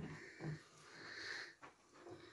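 Faint breathing, with a single light click about one and a half seconds in.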